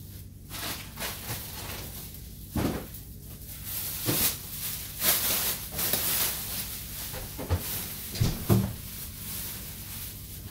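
Thin plastic grocery bag crinkling and rustling as it is handled and shaken, in several bursts. A few sharp knocks come near the end.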